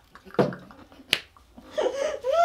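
A drinking glass set down on a hard dresser top with a short knock, then a single crisp click about a second later.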